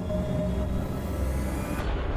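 Low, steady rumble on a film trailer's soundtrack, with a faint held tone in the first part.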